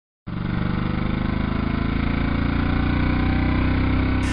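Vehicle engine idling steadily, an even low pulsing note, cutting in suddenly just after the start.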